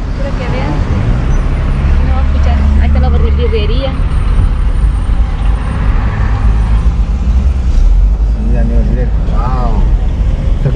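Car driving slowly in town, heard from inside the cabin: a steady low rumble of engine and road noise with a hiss above it.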